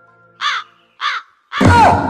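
Two short crow caws about half a second apart, then a loud, sudden burst of noise near the end.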